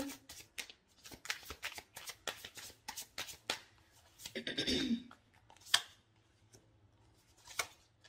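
A tarot deck being shuffled by hand: a quick run of card flicks and slaps for about the first three and a half seconds, then a few single card snaps.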